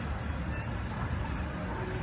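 Steady low rumble of a mobile crane's diesel engine running.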